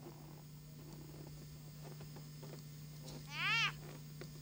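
A sled dog gives one short whine near the end, its pitch rising and then falling, over a steady low hum.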